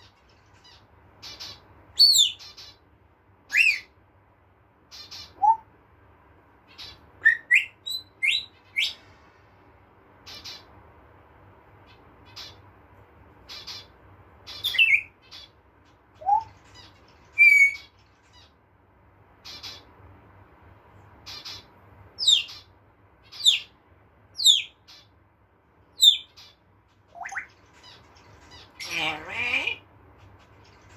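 Caged parrots calling: a string of short sliding whistles, mostly falling in pitch, and brief squawks every second or two, with a longer, harsher squawk near the end.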